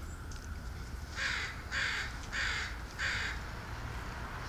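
A bird giving four loud calls in a row, evenly spaced, starting about a second in.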